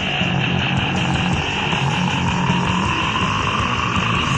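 Heavy, distorted extreme-metal band music from a lo-fi 1993 cassette demo recording: a dense, steady wall of distorted guitar, bass and drums.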